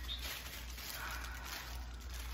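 Quiet room tone: a steady low hum under a faint even hiss, with no distinct handling noises.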